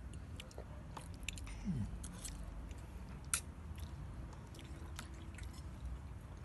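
A toddler chewing a mouthful of spaghetti, faint wet mouth smacks and small clicks scattered through, the sharpest about three seconds in.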